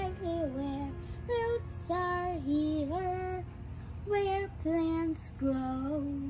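A young girl singing a made-up children's song in short phrases of held notes.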